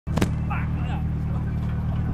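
A car engine idling steadily, with a sharp click near the start from the camera being handled.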